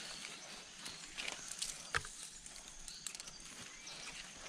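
Tree branches and leaves being grabbed and pulled by hand: faint rustling with a few light snaps and knocks of wood, the sharpest about two seconds in.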